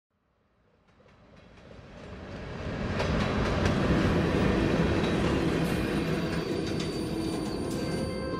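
Freight train rolling past: a steady rumble and rattle of the railcars, with a few sharp clanks, fading in from silence over the first three seconds.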